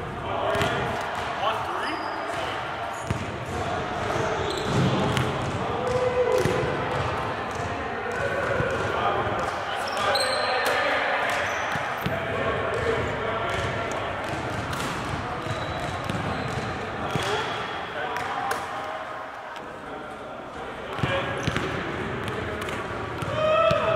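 Basketballs bouncing on a hardwood gym floor during a three-point shooting drill, a series of sharp knocks ringing in the reverberant hall, with indistinct voices under them.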